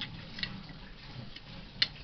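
Light clicks of eating utensils against a ceramic plate: four short clicks in two seconds, the last one the loudest.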